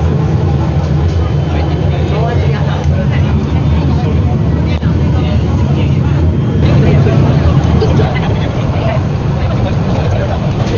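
Peak Tram funicular car running along its track, heard from inside the cabin as a steady low rumble, with passengers chatting.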